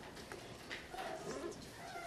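Classroom hubbub of young children's voices talking quietly among themselves, with scattered light clicks and knocks from pencils, paper and wooden desks.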